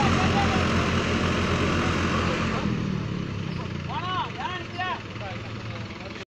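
Diesel engines of a Deutz-Fahr 55 hp 4WD tractor and a Mahindra tractor running under load as they pull a loaded trailer out of mud, growing fainter. A few short shouts from onlookers come in around four to five seconds in.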